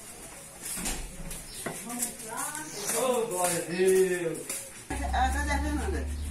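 Several people talking casually at a distance, with one voice calling a woman's name, Fernanda, near the end. A low steady hum comes in about five seconds in.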